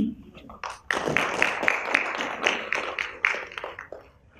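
Audience clapping: a burst of applause that starts about a second in, runs for about three seconds and fades near the end.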